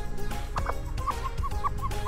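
A hen clucking in a quick run of short calls, about five a second, starting about half a second in, with background music under it.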